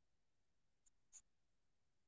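Near silence: room tone, with two faint, short ticks a little under a second in.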